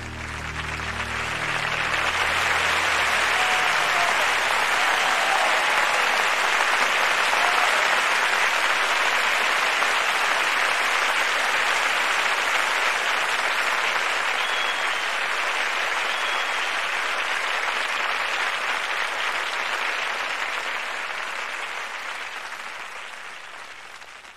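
A large audience applauding at the end of a song, swelling over the first couple of seconds as the final orchestral chord dies away, holding steady, then tapering off near the end. A couple of faint high whistles rise from the crowd in the middle.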